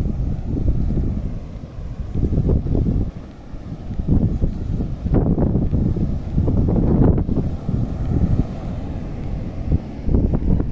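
Wind buffeting the microphone in uneven gusts that swell and drop every second or two, with surf breaking on the beach underneath.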